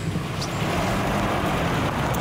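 Steady engine and road noise of a car being driven.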